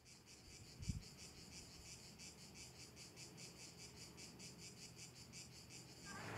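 Faint, steady chirping of insects in a fast, even pulse of about eight a second, with a brief low thump about a second in.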